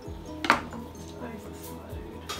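A knife scraping and clinking against a metal muffin tin as a baked tortilla quiche is pried out, one sharp scrape about half a second in, with fainter scrapes after.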